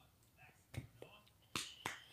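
Four short, sharp clicks close to the microphone in the second half, in two pairs: two about a second in, two more near the end.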